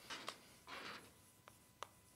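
Chalk writing on a chalkboard, faint: two short scratching strokes in the first second, the second a little longer, then two sharp taps of the chalk against the board near the end.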